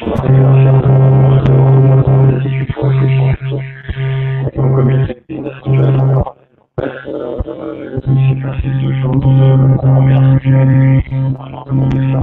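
Loud, steady electronic buzzing drone with a low hum and overtones: interference on a participant's video-call audio. It cuts out briefly twice, about five and six and a half seconds in. The call participants put it down to a faulty headset connection.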